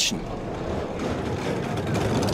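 Bobsled runners rushing and rumbling over the ice of the track at speed, a steady noise that grows a little louder as the sled nears.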